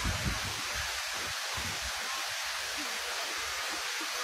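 Steady rushing hiss of the Magic Fountain of Montjuïc's water jets heard across the plaza, with irregular low rumbles of wind on the microphone.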